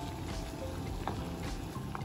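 Water at a rolling boil bubbling in a small saucepan, stirred with a wooden spoon, with a couple of light clicks.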